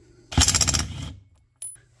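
Cordless subcompact impact wrench hammering briefly in rapid strikes as it spins a chainsaw spark plug loose, then a short click near the end.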